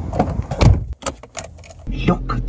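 A car door being opened by its outside handle: a click of the handle and latch, a louder clunk under a second in, then a few lighter clicks.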